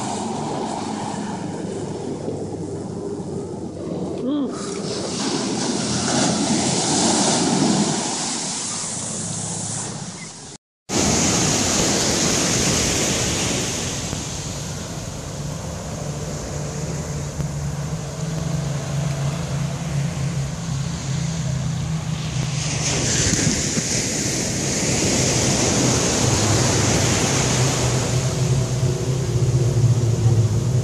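Ocean surf breaking and washing up the beach, with wind rushing on the microphone; the wash swells louder twice, and there is a brief gap of silence about a third of the way in.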